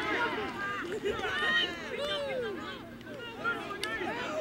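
Several voices shouting and calling over one another from the sideline and field during a rugby league game, with a faint steady hum underneath.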